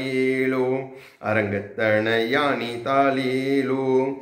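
A man singing a Tamil devotional lullaby solo, with no accompaniment, in long held, slightly wavering notes. There is a short breath break about a second in.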